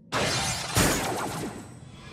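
Cartoon sound effect of crystal rock shattering: a sudden crash, a second crash under a second later, then falling debris fading out.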